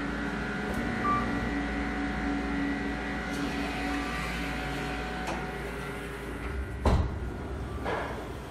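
Kone elevator arriving at the landing over a steady hum, with a short beep about a second in. A loud clunk about seven seconds in, and another near the end, come as the car's doors start to slide open.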